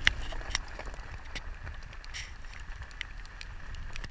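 Vehicle moving slowly over a rough gravel track: a low rumble with scattered knocks and clicks, the loudest just after the start.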